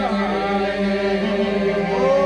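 Albanian Myzeqe folk singing: a steady drone held under a melodic line that bends up and down in pitch.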